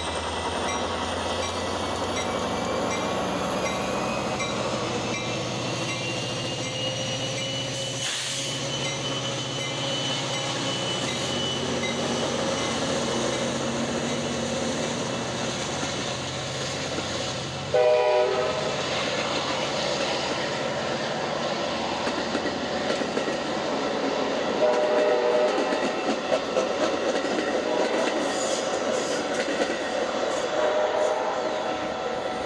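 Metra MP36 diesel locomotive pulling a commuter train away from a station stop, its engine working as the train gathers speed and fading as the locomotive moves off, followed by bilevel passenger cars rolling past with wheels clicking over the rail joints. A train horn sounds briefly about 18 seconds in and again about 25 seconds in.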